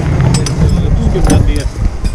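Loud low rumble of a body-worn camera being jostled against clothing, with a few sharp metallic clinks and brief snatches of voices.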